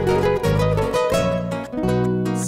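Trio romántico instrumental intro: a requinto guitar plucking a high melody in quick notes over acoustic guitar chords and a bass guitar line.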